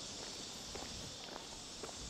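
Footsteps on a concrete quay coming close, a handful of steps about half a second apart, over a steady high drone of insects.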